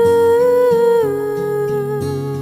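A female voice holds one long sung note with light vibrato, rising slightly and then settling a little lower about halfway through, over a soft instrumental accompaniment.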